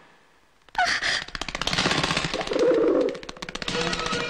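Fight-scene film sound effects: a brief hush, then a sudden burst about a second in, followed by a fast rattling run of sharp clicks.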